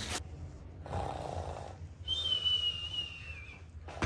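Mock sleeping sound: a soft snore on the in-breath about a second in, then a thin high whistle on the out-breath that drifts slightly downward.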